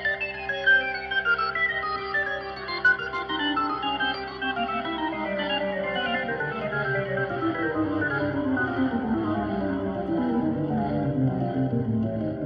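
Instrumental keyboard music: a run of quick notes cascading downward in pitch over a steady held note, with a deeper, fuller bass part building up near the end.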